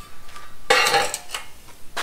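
Metal clatter as a welded steel piece and locking pliers are handled: one clattering scrape of metal on metal about two-thirds of a second in, followed by a few light clinks.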